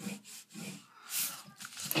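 A pencil making short strokes on paper, with paper rustling, as a line on a knife sketch is redrawn flatter; the strongest stroke comes about a second in.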